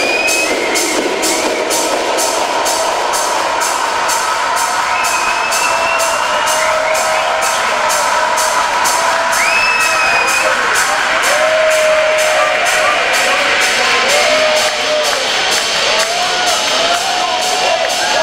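Live techno played over a club sound system with a steady, evenly repeating beat. A dancing crowd whoops and cheers over it now and then.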